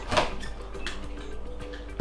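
Scissors cutting through packing tape on a cardboard box: a sharp click just after the start and a lighter one about a second in.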